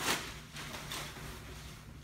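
Plastic packaging bag crinkling as a pair of rain bibs is pulled out of it, loudest in a short burst at the very start and then fading into softer handling.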